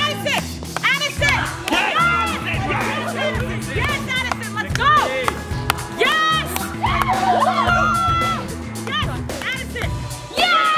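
Background music with a steady bass line, under a group of people shouting and yelling excitedly.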